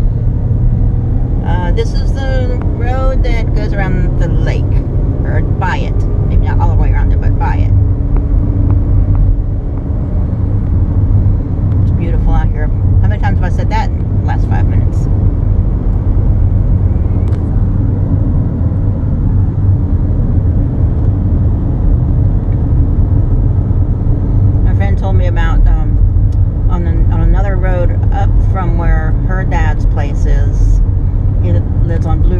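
Steady low road and engine rumble inside a moving car's cabin, with a voice speaking now and then over it.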